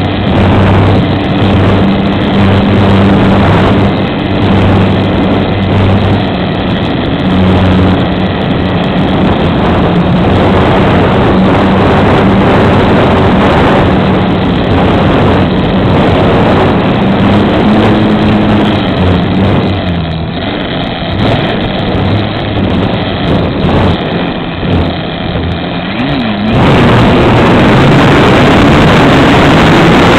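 Electric motor and propeller of a foam model aerobatic plane humming, its pitch rising and falling with the throttle, heard through the small onboard camera's microphone. About three-quarters of the way through the motor sound drops back and a loud, steady rush of wind on the microphone takes over.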